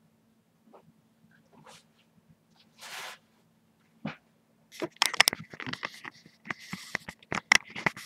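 Rustling and crinkling of craft items being handled close to the microphone: a few faint taps and a brief rustle early, then a dense run of sharp crackles from about five seconds in.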